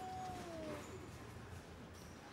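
A high, strained whimper of pain from a man just kicked in the groin, falling slightly in pitch and fading out within the first second; faint room tone follows.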